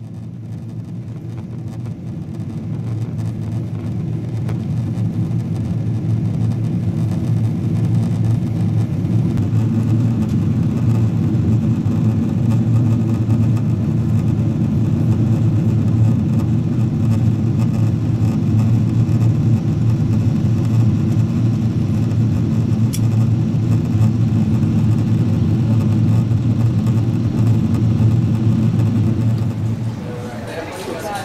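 Airliner cabin noise: a steady low rumble of jet engines and rushing air, heard from inside the cabin, fading in over the first several seconds and then holding level.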